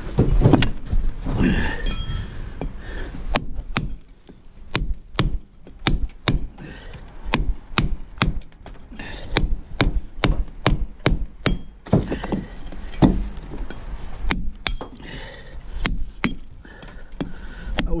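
Club hammer striking a steel bolster chisel to cut a concrete block: a long run of sharp metallic strikes, roughly two a second, after some knocking and handling of the block at the start.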